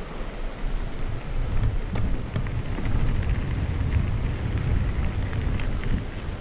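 Wind buffeting a moving camera's microphone: a steady low rumble, with a few sharp clicks about two seconds in.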